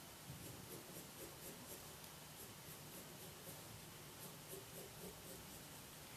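Faint scratching of a pencil drawing a line on paper.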